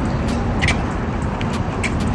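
Steady city street traffic noise, a continuous low rumble, with a few faint brief high chirps.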